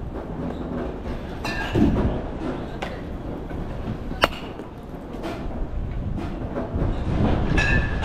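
Batting-cage ambience: a steady low rumble with a few sharp ringing knocks, one about two seconds in, a crisp crack a little past four seconds and another ringing knock near the end.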